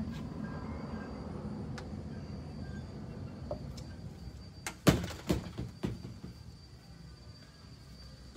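A low rumble, then a quick cluster of sharp knocks or thuds about five seconds in, the first one the loudest.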